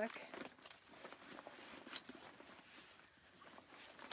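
Fabric rustling and light clicks of metal strap hardware as the straps of a JuJuBe BFF backpack are clipped on, with one sharper click about two seconds in.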